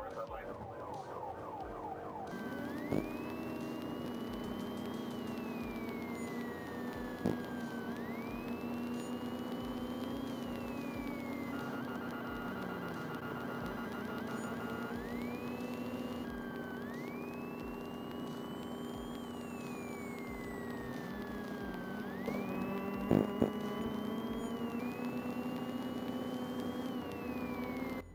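Police car siren wailing, each sweep rising quickly and falling slowly, about one every five seconds, over a steady low hum. For a few seconds in the middle there is a rapid pulsing tone.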